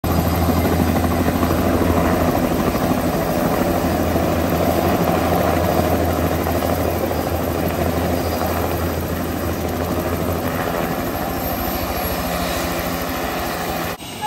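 Helicopter running on the ground with its rotor turning: a steady low rotor beat under the engine noise, the low beat fading about three quarters of the way through.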